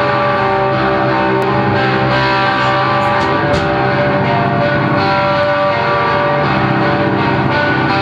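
Live grindcore band playing loud: distorted electric guitar holding ringing chords over drums and cymbals.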